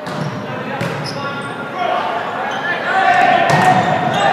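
Men's volleyball rally in a gymnasium: the ball is struck sharply a couple of times, about a second in and again near the end, while players shout to each other.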